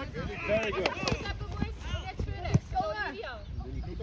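Several voices of children and adults calling out over a football pitch, overlapping. A few sharp knocks of a football being kicked cut through, the loudest about two and a half seconds in.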